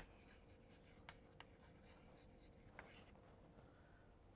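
Near silence with a few faint taps and scratches of chalk on a blackboard as a word is written and underlined.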